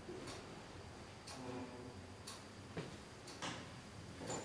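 Faint, regular ticks about once a second over quiet room tone.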